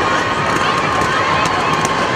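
Crowd of young people on a sports-hall floor, many voices shouting and chattering at once, with scattered sharp clicks.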